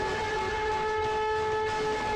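A long steady tone held at one pitch, with several overtones above it.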